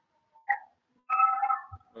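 A pet's brief high-pitched cry, heard over a video-call audio feed: a short faint note about half a second in, then a longer one of under a second.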